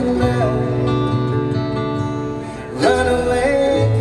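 Live acoustic bluegrass band playing: acoustic guitar, mandolin and upright bass, with voices singing held notes. A new chord comes in with a strong attack about three seconds in.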